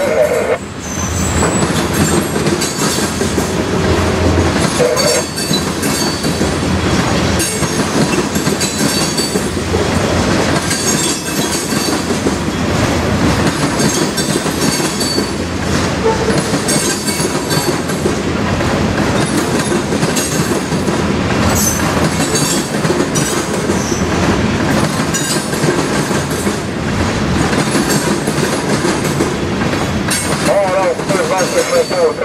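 Freight train of open-top coal cars rolling past, a steady loud noise of steel wheels on rail with clacking over rail joints and brief high wheel squeals now and then.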